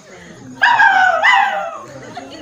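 Two high-pitched, dog-like whimpering cries, one after the other, each falling in pitch.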